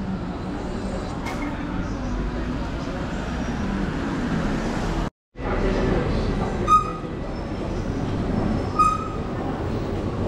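Busy street ambience with passing electric scooters and background voices, broken by a moment of total silence about five seconds in. Two short high beeps sound near 7 s and again near 9 s.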